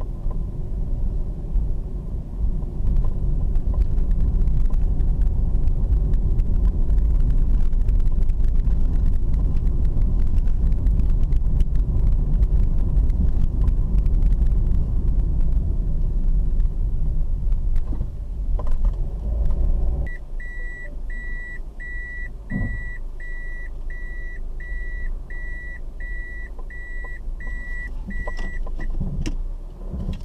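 Steady car-cabin rumble of engine and tyres while driving, cut off abruptly about two-thirds of the way through. After that a high electronic beep from the car repeats about a dozen times, a little more than once a second, with a couple of soft knocks.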